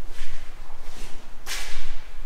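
Footsteps scuffing on a gritty concrete floor, a hissy scrape about every half second, the loudest about one and a half seconds in, over a steady low hum.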